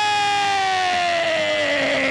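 A man's loud, long war cry yelled into a microphone, one held note sliding slowly down in pitch.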